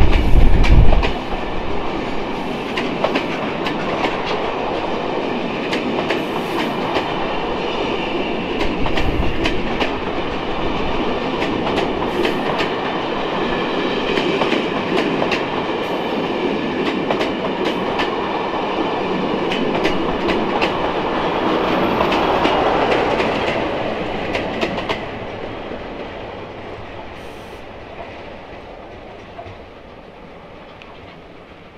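Maroon-and-cream passenger coaches of a charter train passing close by, their wheels clicking over the rail joints over a steady rumble. A heavy low rumble fills the first second. The sound fades over the last several seconds as the end of the train draws away.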